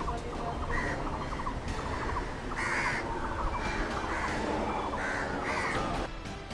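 Crows cawing about six times in short harsh calls, with smaller birds chirping in quick runs, over a steady outdoor background noise.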